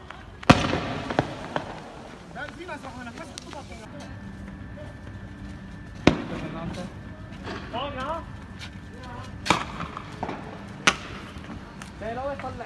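Gunfire in a street clash: five sharp, echoing shots at uneven gaps. The loudest comes about half a second in, a second follows soon after, one falls near the middle and two come near the end. Men shout in between.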